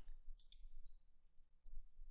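Faint computer mouse clicks: two quick clicks about half a second in, and another a little past a second and a half.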